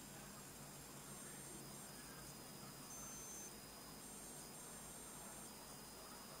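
Near silence: faint steady hiss and low hum of room tone.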